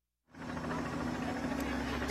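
The sound cuts out to dead silence for a moment, then steady outdoor background noise with a low, even hum comes in and holds.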